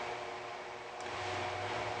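Quiet room tone: a steady low hiss with a faint hum, without a distinct event.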